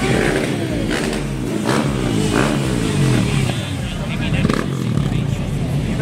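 Motorcycle engines running and revving, their pitch rising and falling, over the chatter of a crowd.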